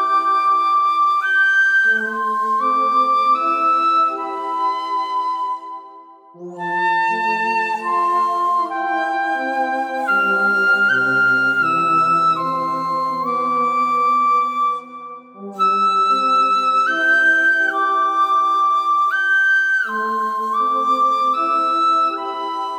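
Shinobue, the Japanese bamboo transverse flute, playing a slow melody of long held notes over soft chordal accompaniment. The phrase breaks off briefly about six seconds in and again near fifteen seconds.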